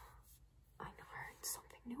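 A woman whispering to herself, faint, starting a little under a second in, with a sharp hissed sound about halfway through.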